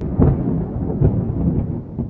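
A loud, deep rumble like distant thunder, swelling just after the start and again about a second in.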